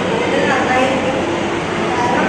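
A woman speaking Malayalam to a room, her voice over a steady, loud background noise.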